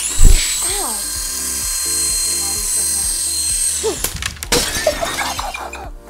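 A sudden loud crash with glass shattering: a breaking-screen sound effect for the toy drone hitting the camera. A steady high hiss follows for about four seconds and then cuts off suddenly.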